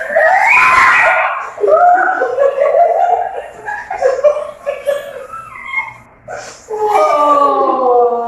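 A woman and a child laughing and shrieking with excitement. A long drawn-out laughing cry comes near the end.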